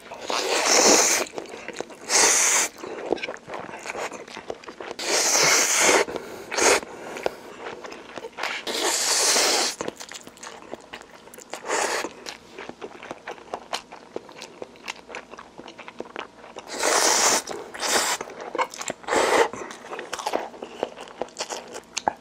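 A person slurping and chewing a mouthful of instant noodles: about five loud slurps of a second or so each, with wet chewing and smacking between them.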